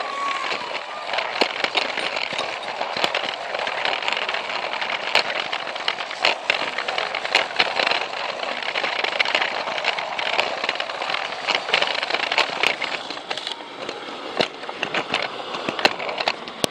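Plarail battery-powered toy train running along plastic track: a steady whir with frequent irregular clicks.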